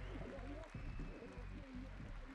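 Faint, indistinct background voices over a low rumble.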